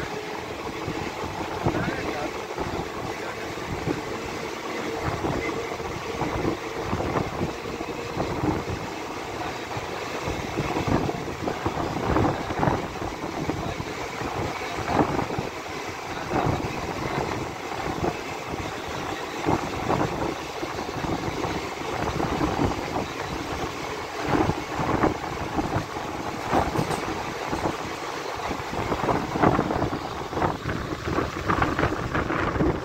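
Passenger train running at speed, heard from an open coach door: irregular knocking and clatter of the wheels over the rails, mixed with the rush of a long goods train of open wagons going by on the next track.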